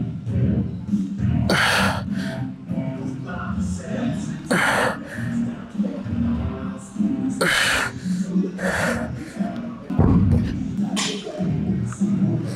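Background music with a man's sharp, forceful breaths on each rep of a heavy incline dumbbell press, about five of them roughly three seconds apart.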